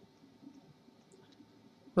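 Quiet room tone with a few faint, short clicks: a stylus tapping on a pen tablet as a fraction is handwritten in digital ink.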